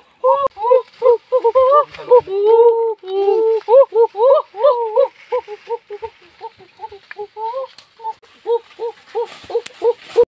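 Rapid series of short hooting calls, several a second, with longer sliding calls between about two and five seconds in.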